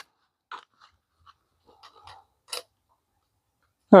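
A handful of faint, short clicks and light taps from a small precision screwdriver and loose Torx driver bits being handled and swapped against a knife's pocket-clip screws, the loudest about two and a half seconds in.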